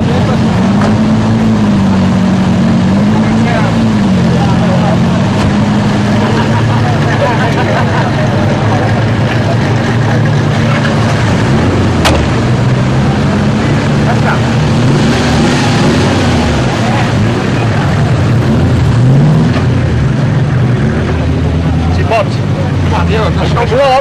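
Off-road 4x4 engine running loud and steady, its pitch rising and falling repeatedly as it is revved, with voices mixed in.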